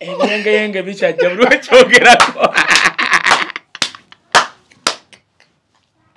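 A man speaks and then breaks into loud, hearty laughter with another man. Three sharp hand slaps follow, about half a second apart, a little under four seconds in.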